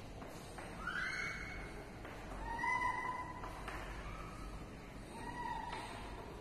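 Chalk squeaking against a blackboard during writing: four short, high squeals, each holding roughly one pitch, the loudest about halfway through.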